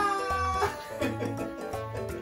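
Background music with a steady beat. A high-pitched laughing voice trails off in the first half second.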